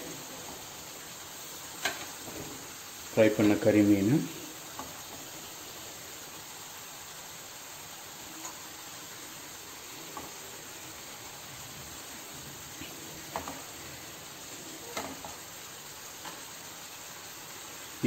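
Spicy masala gravy simmering in a nonstick pan, a steady soft sizzle, with a few faint taps of a spatula and fish being set in the pan.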